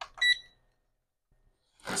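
A single short electronic beep from the portable fan's control panel, about a quarter of a second in, the kind of confirmation tone it gives when a button is pressed.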